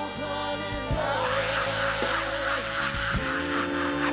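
Live band playing while a male singer holds one long, wavering note from about a second in until near the end.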